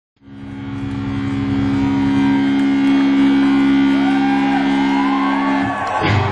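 A steady drone of a few held low notes through a concert PA, fading in at the start and dropping away just before the end, with faint rising and falling whistle-like glides over it in the last couple of seconds.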